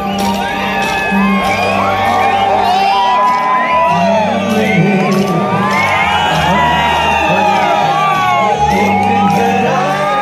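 Live concert music through a PA, with a steady bass line and beat, under a dense crowd shouting, whooping and cheering close by.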